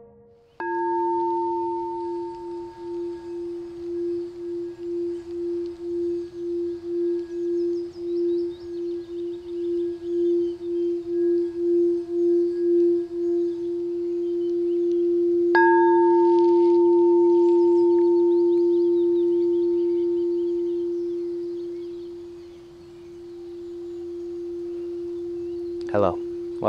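A frosted crystal singing bowl is struck, and its single deep ringing tone pulses and swells as it is kept going with the mallet. About halfway through it is struck again, and it rings on for a long time, fading slowly.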